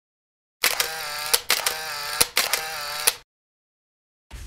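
Intro sound effect for an animated logo: three back-to-back bursts, about a second each, of a wavering pitched tone set off by sharp clicks. It stops abruptly before the end.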